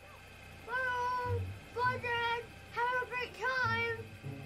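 Four drawn-out, high-pitched calls, each under a second long and each holding one pitch with a dip at the end.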